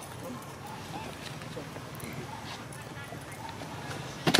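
Faint background chatter of voices over a steady low murmur, with a few small clicks.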